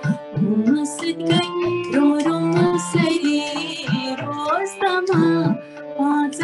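A woman singing a slow, ornamented song melody over instrumental accompaniment with a held drone and light drum strokes.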